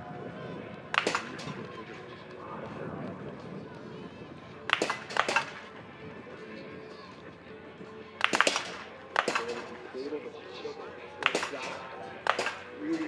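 Biathlon .22 rifle shots on the range, about six sharp cracks in irregular succession, a few seconds apart with some closer pairs, as athletes fire in the standing position.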